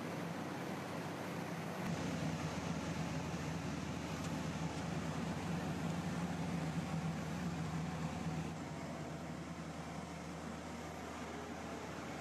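Steady indoor machinery hum with an even rush of air noise, like ventilation plant running. A deeper hum comes in about two seconds in, and the sound eases a little about two-thirds of the way through.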